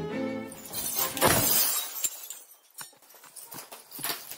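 A loud crash of glass shattering about a second in, followed by a scatter of small tinkling shards settling.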